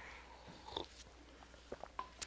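Faint sounds of a person drinking from a cup, with a few small soft clicks, then a light knock near the end as the cup is set down on a stool.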